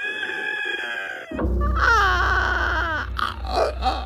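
Music: sustained held tones, then a deep bass comes in just over a second in under a long, wavering vocal 'I'.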